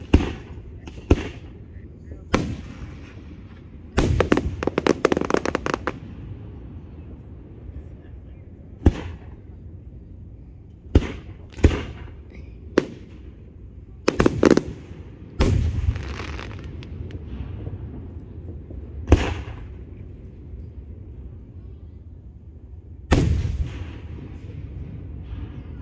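Aerial fireworks shells bursting: about a dozen sharp booms, a second to several seconds apart, with a dense run of rapid crackling pops about four seconds in.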